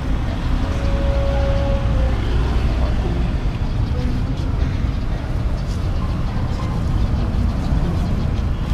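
Steady low rumble of street traffic, with faint voices in the background and a brief steady tone about a second in.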